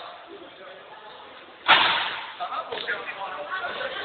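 A single sharp crack of a badminton racket hitting a shuttlecock about a second and a half in, with a short echo, followed by voices.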